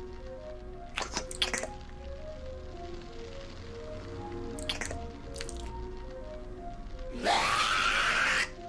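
Slow plinking cartoon background music of single short notes, with a few brief clicks. Near the end comes a crow's loud, raspy caw about a second long.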